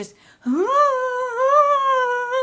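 A woman's voice drawing out one long, high vowel sound. It sweeps up in pitch about half a second in, then holds with a slight wobble, a vocal acting-out of someone taking a very long time to fall.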